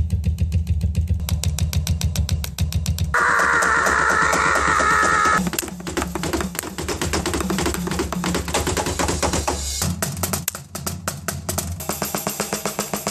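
EZDrummer sampled drum kit triggered from electronic drum pads, played as a fast beat with rapid strokes several times a second and a sustained ringing wash from about three to five seconds in.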